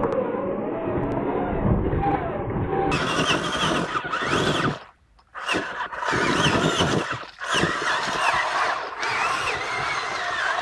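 Traxxas Summit RC truck's electric motor and drivetrain whining, the pitch wavering up and down with the throttle as it crawls over rocks, with water splashing from the tyres. About three seconds in the sound turns brighter and noisier, and it drops out suddenly for about half a second near the middle.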